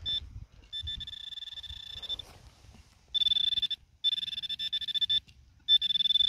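Handheld metal-detecting pinpointer sounding a steady high-pitched alarm tone in four bursts as it is probed around the dug hole, signalling metal close to its tip. The first burst is fainter.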